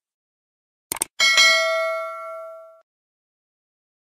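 A quick double click about a second in, then a bright bell ding that rings on and fades out over about a second and a half: a sound effect for a cursor clicking a subscribe button and notification bell.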